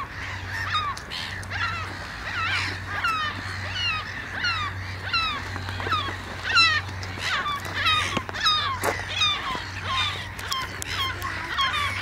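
A flock of gulls calling over one another, with many short downward-sliding calls overlapping throughout as they fight over food thrown to them.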